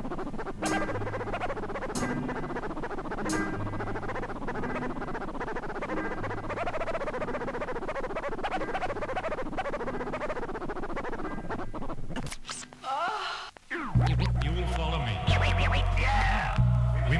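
Hip-hop instrumental beat with a repeating bass line and drums, overlaid with quick back-and-forth turntable scratches. Near the end it breaks off briefly, and a louder, bass-heavy section comes in.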